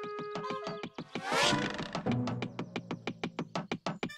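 Cartoon music, then from about a second in a fast, even knocking of about seven taps a second, as a metronome-like pecking gadget drives its beak into a tree trunk. A short whoosh comes just as the knocking starts.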